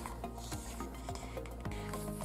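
Glossy pages of an album photobook being turned by hand, paper rubbing and sliding against paper, over quiet background music.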